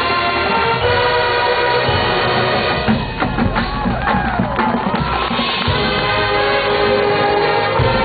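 High school marching band playing live: the winds and brass hold sustained chords, then drop out about three seconds in, leaving drum strikes and sliding tones. The full band chords come back about two seconds later.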